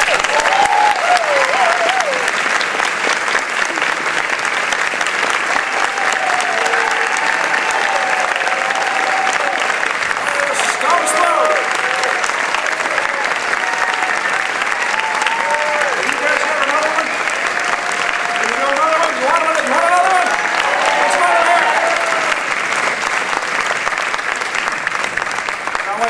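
Theatre audience applauding steadily, with voices calling out over the clapping.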